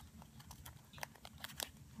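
Faint scattered rustles and small crinkles of origami paper being handled as a folded tab is worked into a tight slot of a modular Sonobe cube.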